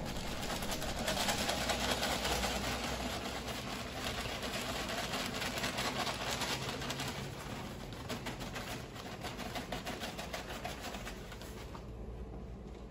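Powdered filler pouring from a bag into a plastic bucket of water: a steady rushing hiss with crackle from the bag, easing off over the last few seconds as the bag empties.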